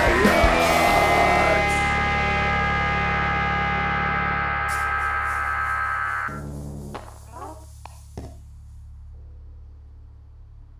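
Heavy rock band hitting a final chord, the electric guitars ringing out for about five more seconds before being cut off suddenly. A few faint knocks follow over a steady low amplifier hum.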